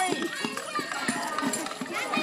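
Young children's voices chattering over scattered light taps and jingles of hand-held rhythm instruments such as a tambourine.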